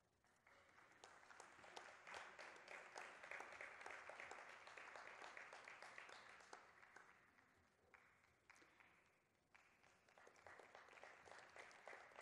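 Faint audience applause, dense clapping that swells about half a second in, fades out after about seven seconds, and picks up again more thinly near the end.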